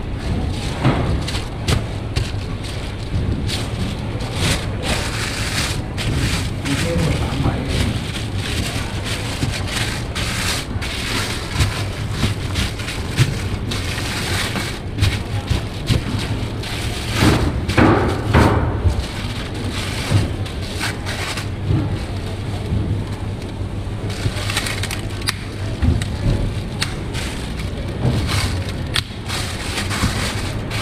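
Plastic sheeting crinkling and rustling as raw meat is rolled up in it on a steel counter, with scattered thumps, over a steady low hum.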